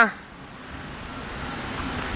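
Traffic noise from a car driving past on the road, a steady rush that slowly grows louder.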